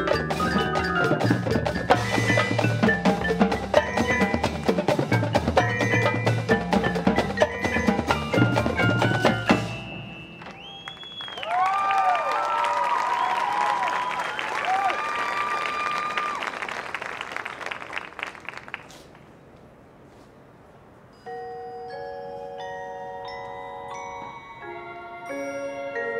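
High school marching band, with drums and front-ensemble mallet percussion, playing a loud, driving rhythmic passage that breaks off about ten seconds in. Sliding, wavering high tones follow and fade, and near the end sustained mallet-keyboard notes begin.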